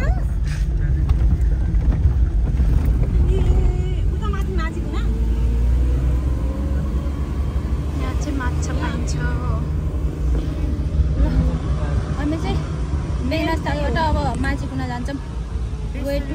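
Steady low rumble of a car heard from inside the cabin while it is under way, with people's voices talking over it at times.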